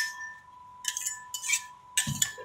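Metal spatulas scraping and clinking on a stainless steel cold plate as a sheet of rolled ice cream is spread and smoothed. There is a sharp ringing clink at the start, then two scraping strokes about a second in and again half a second later.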